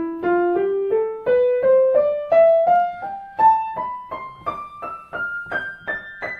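Piano scale played ascending in triplets, about three even notes a second, climbing steadily over more than two octaves.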